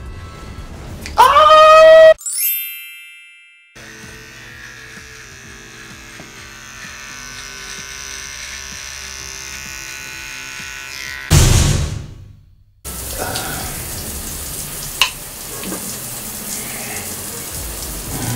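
A loud rising-pitched sound effect with a fading high ring after it. Then a Manscaped Lawnmower 3.0 electric body trimmer runs steadily for about seven seconds. After a loud short burst near the two-thirds mark comes a steady hiss of running shower water.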